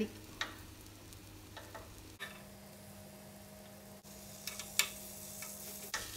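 Metal spoon clicking and scraping against a mini martabak pan while flipping small cakes. A few sharp clicks come early and a quicker run of them comes near the end, over a faint sizzle of batter cooking.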